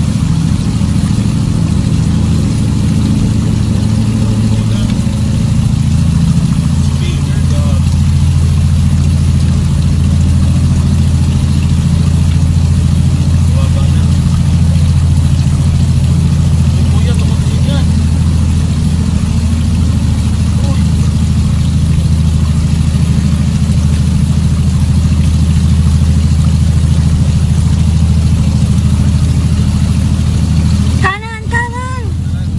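Toyota Land Cruiser engine running as a steady low drone, heard from inside the cabin while the vehicle wades through deep floodwater.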